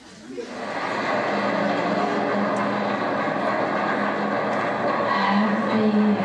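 Car engine and road noise played as a theatre sound effect, swelling up over the first second and then running steadily with a low pitched hum.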